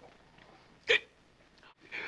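A man hiccups once, a single short, loud hiccup about a second in: a comic drunk's hiccup from too much champagne.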